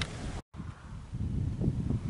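Wind buffeting the camera microphone: a low, gusty rumble, broken by a split-second gap of silence about half a second in.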